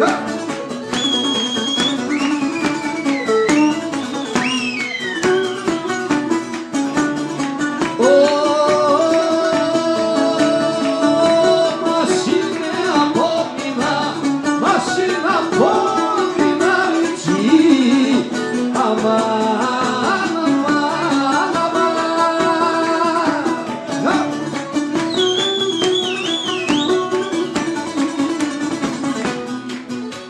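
Background music: plucked string instruments accompanying singing, with held notes and sliding melodic lines.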